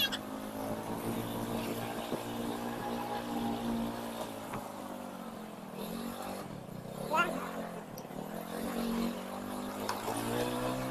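Motorcycle engine at low speed, its pitch falling and rising as the throttle is eased and opened again for a run of speed bumps. A brief rising higher sound stands out about seven seconds in.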